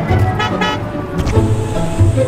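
Background music over an all-electric Hyundai Ioniq 5 pulling up and stopping, with a short double horn toot about half a second in.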